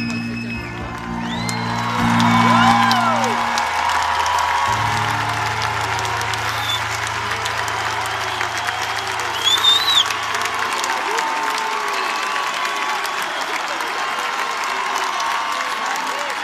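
A large concert crowd applauding and cheering at the end of a song, with a few high cheers rising and falling, the loudest about two and a half and ten seconds in. Under it the band holds low sustained notes that stop about eleven seconds in, leaving only the applause.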